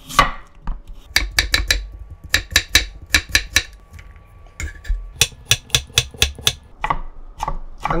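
Chef's knife cutting raw potato on a wooden cutting board, then carrot near the end: runs of quick, crisp strokes a few per second, with a quieter pause about halfway through.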